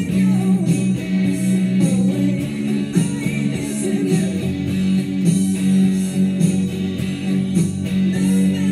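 Stratocaster-style electric guitar played along with a backing track that has a steady beat.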